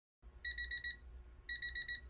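Electronic beeping: quick groups of about five high beeps, a new group starting about once a second, over a low hum.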